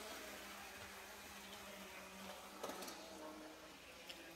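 Near silence: quiet room tone with a faint steady hum and a slight brief rustle a little before the end.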